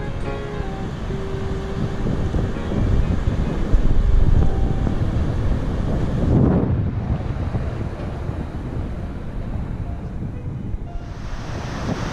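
Roar of the Iguazú Falls, water rushing over the brink, with wind buffeting the microphone. The last notes of piano background music fade out in the first couple of seconds.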